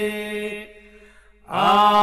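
Men's voices singing an unaccompanied Albanian iso-polyphonic folk song from Kërçova: a held drone note fades out under a second in, there is a short breath pause, and the voices come back in together about a second and a half in on a held low note.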